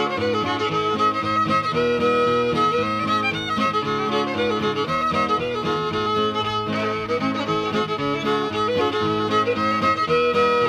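Old-time fiddle playing a breakdown in the key of A, with guitar accompaniment, in a continuous run of short notes.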